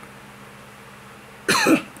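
A man coughs once, a short sharp cough about one and a half seconds in, over a faint steady room hum.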